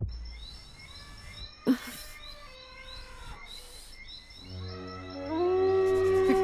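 Night forest sound effects: short rising chirps repeating about two or three times a second over a soft hiss, with one sharp snap about a second and a half in. Music fades in over the last second and a half.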